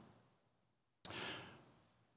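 Near silence, then about a second in a single soft breath, about half a second long, taken close to a microphone.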